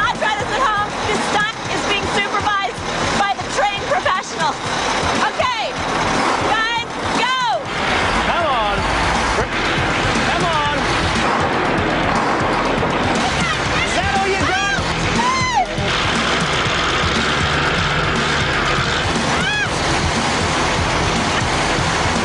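Background music over shouting and laughter, with the steady noise of a Mack truck's diesel engine running under load from about eight seconds in.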